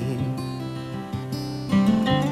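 The song's music track: acoustic guitar playing in a gap between sung lines.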